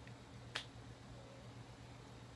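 A single small, sharp click about half a second in, from makeup items being handled, over a faint steady low hum.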